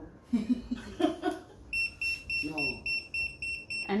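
Handheld electronic diamond tester pen beeping as its probe is held against a stone: a fast string of short high-pitched beeps, about five a second, starting nearly two seconds in and lasting about two seconds.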